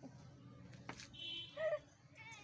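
A pet dog whining and giving a short yelp: a thin high whine about a second in, followed at once by a brief yip.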